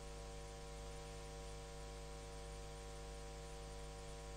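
Steady electrical hum with a low hiss, a set of constant tones with no change, from the live sound feed while the instructor is silent.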